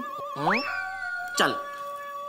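Background music of sustained tones, one high note wavering, with a sliding sound that swoops sharply up about half a second in and then glides slowly down.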